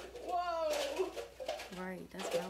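People's voices making wordless exclamations and murmurs, one a drawn-out call that falls in pitch about half a second in.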